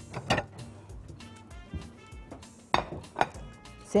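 Three sharp clinks of kitchen bowls and utensils, one just after the start and two near the end, over soft background music.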